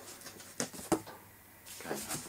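Cardboard shipping carton's top flaps being handled: light rustling with two sharp clicks a little after halfway.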